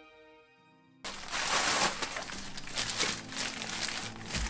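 A music tail fading out, then after about a second clear plastic wrapping on a bottle crinkling and rustling as it is handled.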